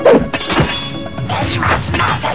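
Cartoon fight sound effects over an action music score: a hard hit right at the start, with a falling sweep after it, then a second hit about half a second later.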